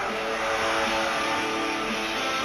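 Live rock music with guitar chords held steady.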